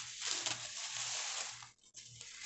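Paper packing rustling and crinkling as it is pulled off a desert rose seedling, stopping shortly before the end.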